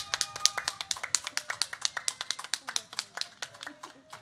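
Brisk steady hand clapping close to the microphone, about eight claps a second, thinning out near the end. Long steady tones sound behind it.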